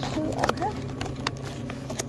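A small cardboard snack box being picked up and handled, giving a quick run of irregular knocks and clicks, the loudest cluster about half a second in. A steady low hum runs underneath.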